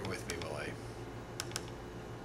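Sharp clicks of a computer keyboard and mouse in two close pairs while files are browsed, over a steady low hum.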